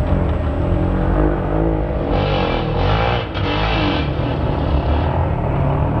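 Enduro motorcycle engine revving, its pitch rising and falling as the rider opens and closes the throttle, with a short drop in level a little past three seconds.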